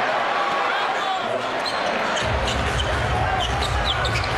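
Basketball being dribbled on a hardwood court over arena background noise, with a deep low rumble coming in about halfway through.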